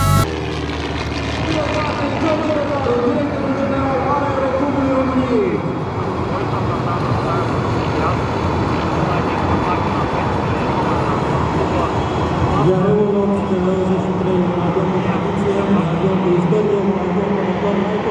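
Single-engine propeller plane flying a display overhead. Its engine note falls in pitch as it passes a few seconds in, then comes back as a steadier, stronger drone about two-thirds of the way through.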